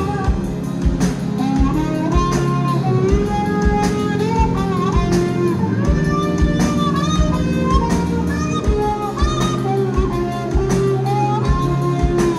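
Live rock band playing: a drum kit with steady hits, electric guitar, bass and keyboards, with a gliding lead melody over a held low bass note.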